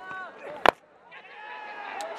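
A cricket bat strikes the ball once with a single sharp crack about two-thirds of a second in, the loudest sound. Players' voices come around it and rise again toward the end as shouts of catch go up for the lofted shot.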